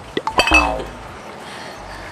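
A few quick clinks of glass bottles being handled and set down in the first half-second, followed by a short voiced exclamation.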